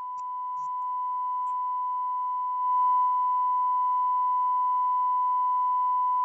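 Broadcast line-up tone: one steady, unbroken 1 kHz test tone, held at a constant pitch and level. It marks the feed as off-programme during a break in the broadcast.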